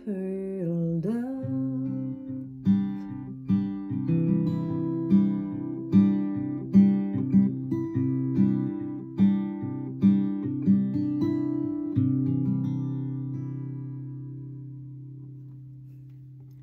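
A woman sings the last word of a lullaby, her voice gliding down, then an acoustic guitar fingerpicks the closing bars as an outro. A final chord about twelve seconds in rings out and slowly fades.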